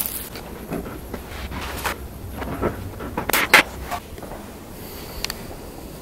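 A few scattered clicks and knocks of hand work on car parts, the loudest a quick double knock about halfway in, over a low steady workshop background.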